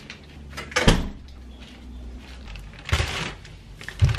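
Door and plastic carrier bag being handled: a sharp thump about a second in, rustling, and another knock near three seconds.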